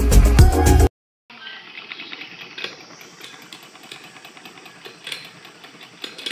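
Loud background music cuts off about a second in. A Salora hand sewing machine then runs quietly with light, irregular clicking, turning freely now that the thread jammed in its shuttle has been cleared.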